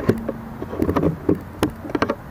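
An insect buzzing close to the microphone in two short stretches, with a string of sharp taps and knocks among them.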